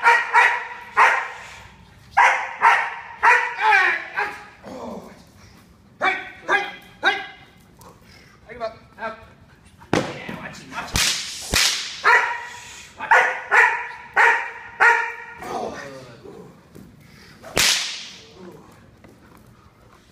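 Young German Shepherd barking in rapid runs of several barks at a time during a hold-and-bark exercise: she is meant to bark at a helper who stands still, not bite him. A few sharp cracks come about halfway through and again near the end.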